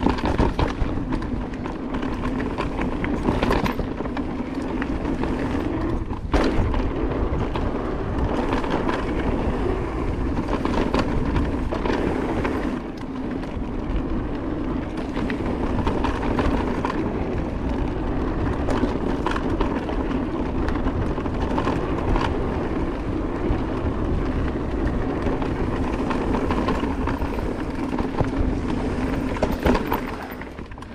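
Cube Stereo Hybrid 160 e-mountain bike rolling fast down a dirt trail: a steady noise of knobby tyres on dirt, broken by sharp knocks and rattles as the bike hits bumps and roots, one of them plainly louder about six seconds in.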